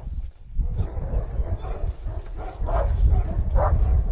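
Moscow Watchdog barking as it lunges and bites at a trainer's padded bite sleeve in guard-dog bite work, with several short barks in the second half over a heavy low rumble.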